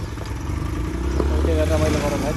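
Motorcycle engine running close by, revving up about a second in and holding the higher speed.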